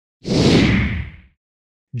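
A single whoosh sound effect lasting about a second, thinning out as it fades: an edit transition between segments.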